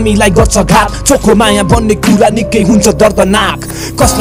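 Nepali hip hop track: rapped vocals over a beat with hi-hats and a deep bass that slides down in pitch on several notes.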